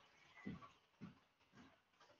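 Near silence with three faint, short, low sounds about half a second apart, typical of a dog whimpering softly.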